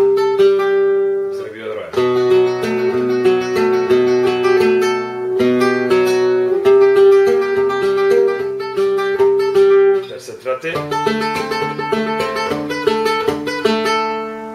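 Flamenco guitar played in four-finger tremolo: one treble note repeated so fast it sounds sustained, over a moving thumb-played bass line. It forms a fandango falseta, with brief breaks in the phrase about two seconds in and again near ten seconds.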